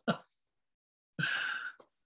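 A man's laughing breath: a short laugh right at the start, then a breathy, sighing exhale of about half a second a little over a second in.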